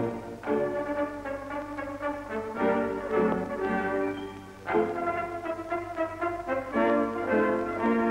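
Background music played on brass instruments: a melody of held notes in phrases, with a short break about halfway through.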